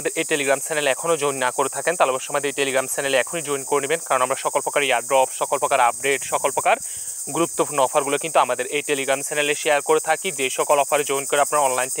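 A man speaking continuously, with a steady high-pitched hiss underneath.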